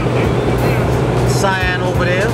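Steady low drone of a passenger airliner cabin in flight, with a man's voice briefly about one and a half seconds in.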